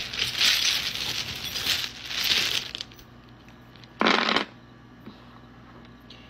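A handful of small charms (metal trinkets, dice, a key) rattling and clinking as they are shaken and cast onto a wooden table, for about three seconds, then settling. A short hum about four seconds in.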